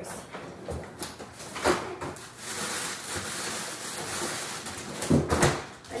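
Kitchen freezer being opened and searched for a bag of frozen blueberries: a couple of knocks about a second in, steady rustling and sliding through the middle, and louder knocks near the end.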